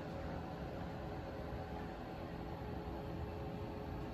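Quiet, steady hum and hiss of shop room tone, with nothing starting or stopping.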